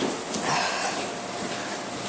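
Room tone picked up by a body-worn camera microphone: a steady hiss with a thin, faint hum running under it. A brief faint voice sounds about half a second in.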